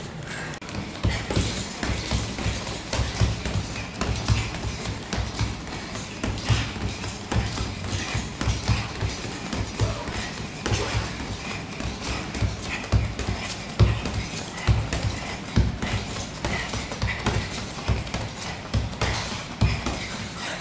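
Knee strikes thudding into a hanging heavy bag in a continuous run, roughly two a second.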